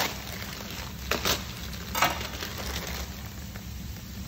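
Mackerel fillets sizzling gently in a frying pan, with a few short crinkles of a plastic bag being handled about one and two seconds in.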